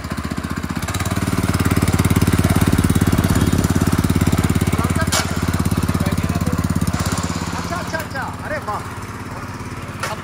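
VST Shakti power weeder's 212 cc single-cylinder petrol engine running. It grows louder about a second in and settles back to a lower, steadier run after about seven seconds.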